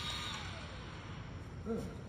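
Rotary polisher with a foam pad, its high motor whine fading out about half a second in as the machine is switched off after a light-touch polishing pass on car paint.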